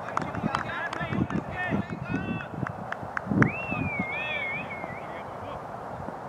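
Voices calling out across an open field, mixed with scattered knocks, and a high wavering whistle-like call starting about three and a half seconds in.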